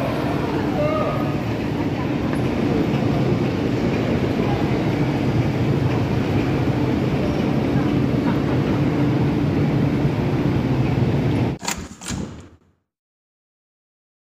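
Busy railway station ambience around an escalator: a crowd of passengers moving and talking over a steady machinery hum. Two knocks come just before the sound cuts off abruptly near the end.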